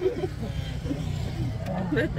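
Steady low rumble of an open electric shuttle cart in motion: tyre and road noise with wind buffeting the phone's microphone, under voices and a laugh near the end.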